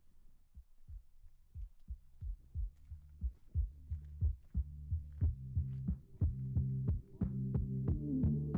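Background music fading in: a low held bass with a steady pulsing beat, about three hits a second, growing louder.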